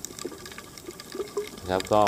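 Underwater sea-water ambience, a low wash with scattered faint clicks and crackles; a man's voice comes in near the end.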